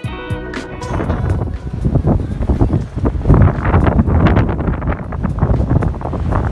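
Background guitar music ends about a second in, giving way to strong, gusting wind buffeting the microphone.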